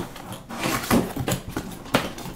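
Cardboard retail box being opened by hand: rustling and scraping of the card as the tab and top flap are worked loose, with a couple of sharp clicks, the sharpest near the end.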